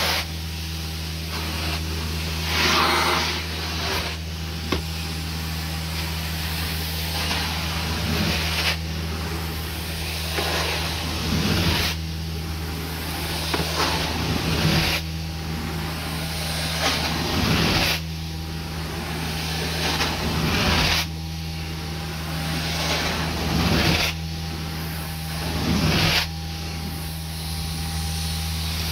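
Hot-water carpet extraction through a 14-inch swivel floor wand. A steady low machine drone runs under the hiss of suction and spray, and the hiss swells every three seconds or so as the wand is stroked across the carpet.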